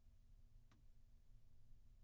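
Near silence: faint room tone with a low steady hum and one faint click a little under a second in.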